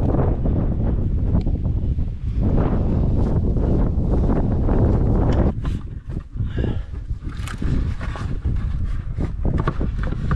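Wind buffeting the microphone for the first half. From about halfway, scattered short knocks and scrapes of hands handling a plastic valve box and loose dirt around a buried PVC line.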